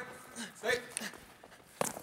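Box lacrosse players in a live drill: a short shouted call about a second in, then a sharp knock near the end from play on the turf.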